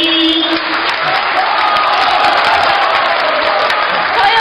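Men's voices hold the last sung note, ending about half a second in, and then an audience applauds steadily.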